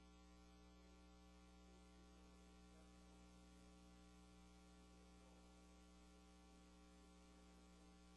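Near silence apart from a faint, steady electrical mains hum in the audio feed.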